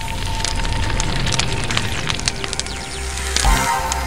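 Fire sound effect for a logo sting: dense crackling flames over a low rumble, swelling into a louder whoosh about three and a half seconds in.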